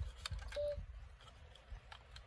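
Faint clicks and rustles of a plastic blind-box capsule and a card being handled, over a low rumble, with one brief steady hum about half a second in.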